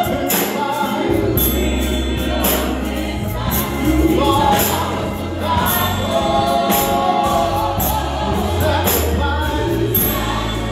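Gospel music: a man singing into a microphone over an accompaniment with bass and percussion. The bass line comes in about a second in.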